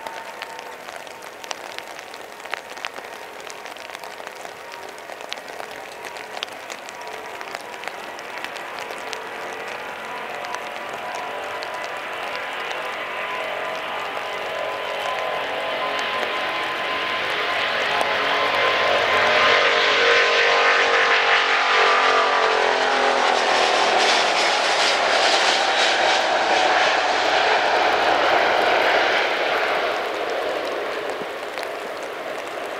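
Airbus A350-900's Rolls-Royce Trent XWB engines at takeoff thrust during the takeoff roll on a wet runway: a steady whine over a rushing noise that grows louder as the jet approaches. It is loudest about two-thirds of the way in, where the engine tones bend down in pitch as the aircraft passes, and it stays loud to the end.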